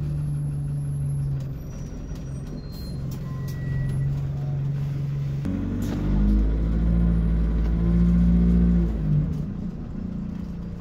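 Bus engine heard from inside the passenger saloon. It runs steadily at a low pitch, then revs up about five and a half seconds in and runs louder with a deep rumble as the bus pulls away, easing off shortly before the end.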